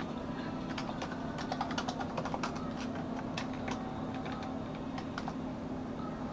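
Computer keyboard being typed on, with quick irregular keystrokes that thin out after about three and a half seconds, over a steady low hum.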